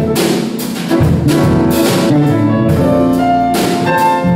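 A live jazz-pop band playing: grand piano, drum kit with regular cymbal hits, and electric bass.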